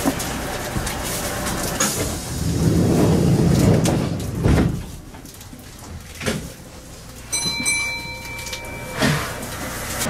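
Electric train stopped at a station platform with its sliding passenger doors working: a rush of air swells from about two and a half seconds in and ends in a knock as the doors reach their stop. After that it goes quieter, and a steady electronic tone sounds for about a second near seven seconds in, with a few single knocks around it.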